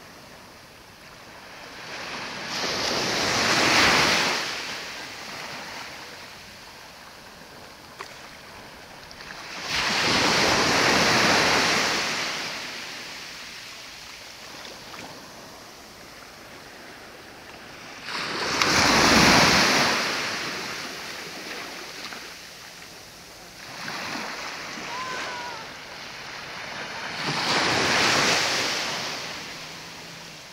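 Small waves breaking and washing up on a shore, four times, each a hiss that swells and fades about eight seconds apart.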